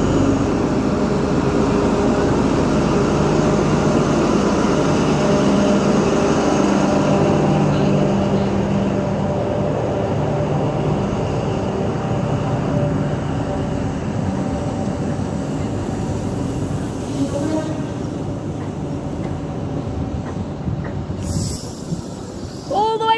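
Class 43 HST power car's diesel engine working as the Midland Pullman train pulls away from the platform. Its steady drone slowly fades while the coaches roll past.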